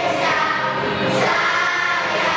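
A large group of children singing together in unison, many voices on one line, with a brief hiss of an 's' sound about a second in.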